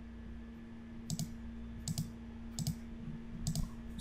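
Computer mouse clicked about four times, roughly a second apart, over a faint steady hum.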